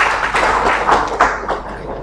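Audience applauding, many overlapping claps that ease off a little near the end.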